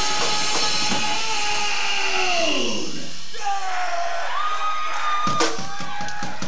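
Live rock band at the end of a song: a long sustained electric guitar note that slides down in pitch, then a higher held note, with a few drum hits near the end.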